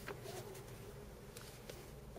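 Quiet inside a Chevrolet car: a faint low engine hum with a few soft clicks.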